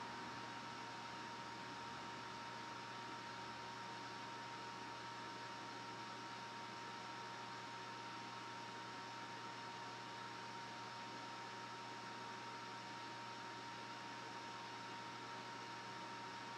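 Faint steady hiss with a constant electrical hum and a thin high whine, unchanging throughout.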